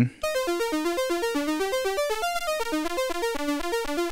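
ST Modular Honey Eater, an analog oscillator built on the CEM3340 chip, playing a fast sequenced melody on its pulse wave. The notes step up and down several times a second while a modulation source sweeps the pulse width, changing the tone.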